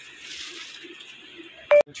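A single short electronic beep, a steady tone lasting about a tenth of a second near the end, cut off by a brief dropout. Faint room hiss comes before it.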